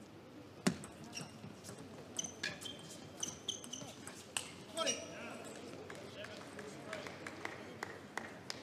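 Sharp clicks of a table tennis ball striking bats and table, a dozen or so at uneven spacing, the loudest about a second in. Brief high squeaks, typical of players' shoes on the court floor, come in between.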